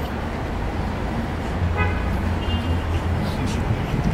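Street traffic: a steady low engine drone from passing vehicles, with a brief vehicle-horn toot about two seconds in.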